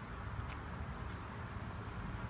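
Outdoor background noise: a steady low rumble, with three short, faint high clicks about half a second and a second in.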